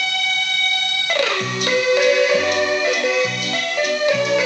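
Accordion playing a Viennese waltz: a long held chord that slides down about a second in, then the melody over bass notes that come back about once a second on the downbeat.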